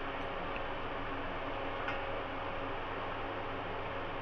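Steady background hiss with a faint hum, and one light click about two seconds in as stuffed bitter gourds and a spoon are handled over a steel bowl.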